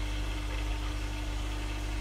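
Steady low mechanical hum of aquarium equipment running, with a constant faint tone over it.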